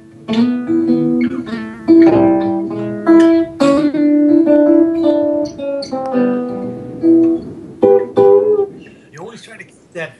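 An archtop guitar played in a blues shuffle style: a phrase of picked chords and single notes that ring and fade, stopping about nine seconds in.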